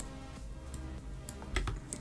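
A few separate clicks of a computer keyboard and mouse, one of them a spacebar press that starts animation playback about a second and a half in.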